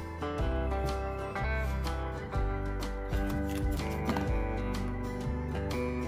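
Instrumental background music with a bass line and sustained melodic notes.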